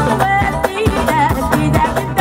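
Live band music: a woman singing into a microphone over a steady drum beat.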